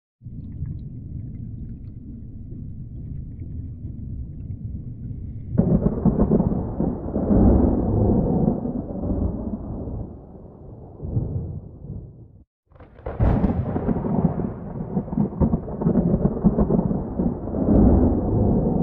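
Deep rolling rumble of thunder. It starts low, swells much louder about five seconds in and fades. It cuts out for a moment near the twelve-second mark, then comes back with a sharp crack and rolls on.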